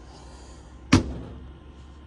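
A single sharp metallic clack about a second in as a Snap-on cordless driver's built-in magnet snaps onto the steel toolbox.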